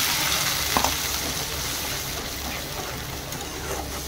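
Liquid hitting hot oil and fried onions in a metal kadai, sizzling loudly and slowly dying down as it is stirred with a metal spatula. There is one sharp clink about a second in.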